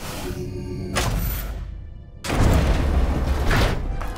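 Cartoon sound effects over background music: a whoosh about a second in, a brief hush, then a loud, low boom a little past halfway.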